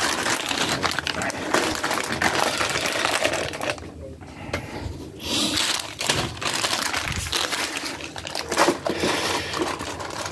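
Plastic food packets crinkling and rustling as they are handled, in two spells with a short lull about four seconds in.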